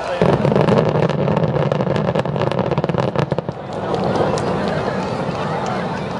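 Distant aerial fireworks: a low rumbling boom arrives at the start and runs into about three seconds of dense crackling, then dies down.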